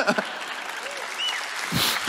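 Church congregation applauding steadily after an emotional tribute.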